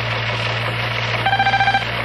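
Steady hiss and low hum of an old radio recording, then, about a second and a quarter in, a short half-second buzzy electronic beep: a news sounder marking the break between two stories in the newscast.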